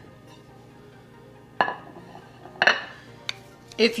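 A plate and a wooden spoon knocking against a glass mixing bowl as the plate covering it is lifted off: three separate clinks, the first about a second and a half in and the last near the end, over quiet background music.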